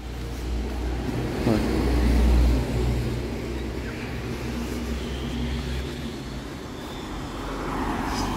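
Street traffic: a car's engine passing close by, a low rumble that swells to its loudest about two seconds in and fades after about six seconds.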